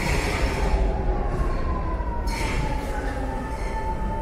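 A Paris Métro Line 7 train running along the platform, slowing down: a low rumble with a whine that slowly falls in pitch as the train gets quieter.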